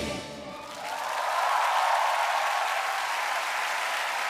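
Studio audience applauding, swelling up about a second in and then holding steady, as the last note of the song fades out.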